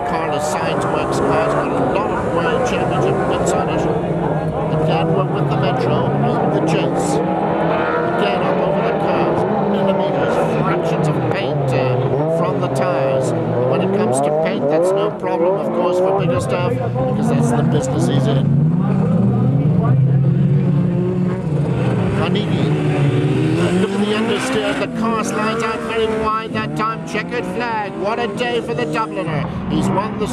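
Rallycross supercar engines at full race pace, the pitch rising and falling over and over with gear changes and corners, with scattered sharp cracks.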